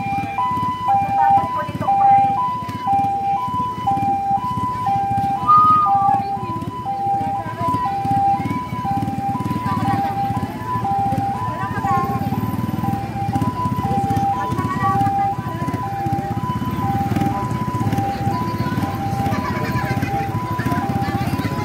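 Ambulance siren on its two-tone hi-lo setting, switching back and forth between a higher and a lower note about every half second, over crowd chatter.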